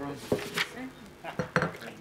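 Several light clinks and taps of tableware, glasses and cups set down and handled on a meeting table, under faint background murmuring.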